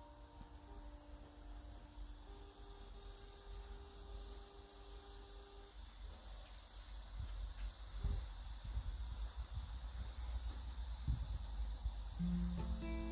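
A steady, high-pitched chorus of insects chirping, typical of crickets in an autumn garden. Underneath is a low rumble on the microphone, with a few soft knocks in the second half.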